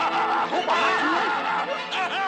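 A cartoon character laughing in a run of quick, rising-and-falling 'ha' sounds over orchestral film score.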